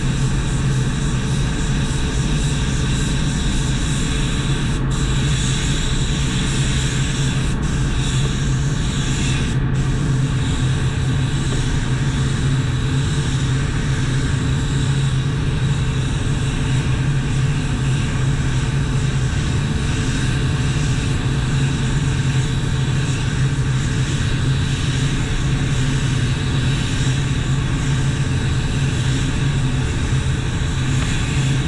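Compressed-air paint spray gun hissing steadily as it sprays base-coat colour, with a few brief breaks in the hiss in the first ten seconds where the trigger is let off. A steady low hum from the spray booth's ventilation runs underneath.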